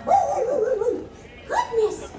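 A cartoon character voice over the show's loudspeakers: a high, wavering, squawky babble with no clear words, in two phrases, the second near the end.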